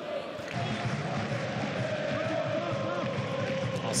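Football stadium crowd noise: a steady din of many voices, with supporters chanting.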